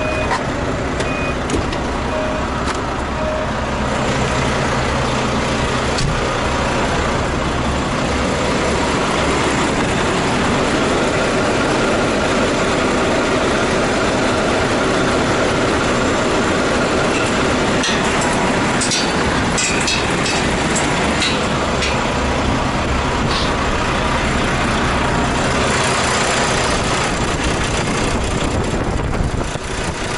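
Volvo VNL860 semi truck's diesel engine idling steadily, heard close up. A few short clicks and knocks come about two-thirds of the way through, as the hood latch is worked.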